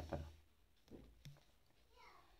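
A voice ends a spoken word, then near silence with two faint, short soft sounds about a second in.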